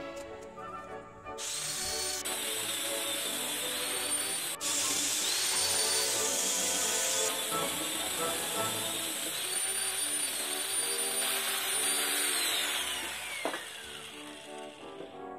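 Electric angle grinder fitted with a sanding disc, sanding a pine block. It starts about a second and a half in with a steady high whine that dips slightly now and then, and the whine falls away as the grinder spins down near the end. Background music plays underneath.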